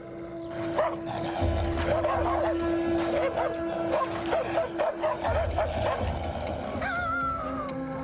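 A girl barking like a dog, a run of short barks, over background music with a steady held tone and a low pulsing beat.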